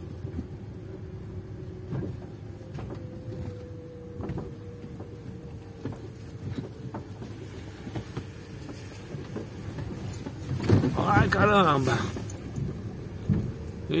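Car cabin on a rough, potholed dirt road: low road rumble with many small rattles and clicks as the car jolts, with a little suspension noise that the driver has pointed out. A voice is heard briefly near the end.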